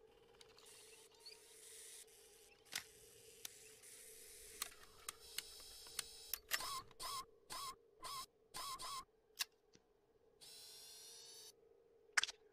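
Small robot sound effects: quiet mechanical clicks and short whirs, with a quick run of them from about six to nine seconds in, over a faint steady hum. A short whine comes near the end as the robot comes back to life.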